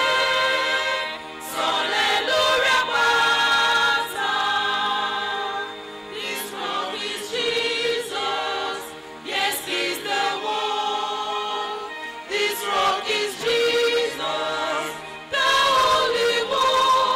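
Small mixed choir of men and women singing a gospel song in harmony through microphones, without instrumental accompaniment, in held phrases separated by short breaths.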